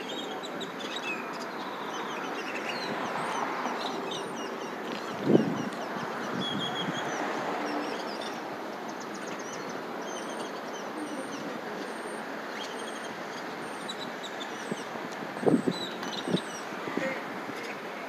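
Street ambience: many small birds chirping over a steady hum of traffic, with a sharp knock about five seconds in and a few more near the end.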